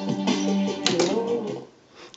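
Guitar music playing through an Akai X-360 reel-to-reel tape recorder. A little under a second in come two sharp clicks, then the music fades out to near silence: the tape has run off the reel and the machine disengages and switches itself off.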